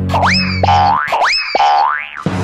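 Cartoon-style boing sound effect, played loud: two quick rising swoops about a second apart, each ending in a short held note, over music that cuts out about halfway through.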